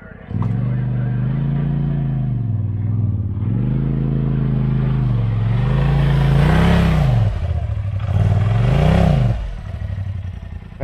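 Polaris RZR Pro side-by-side's engine coming in suddenly and revving in about four surges as it drives up a sand slope, the last two surges higher and louder.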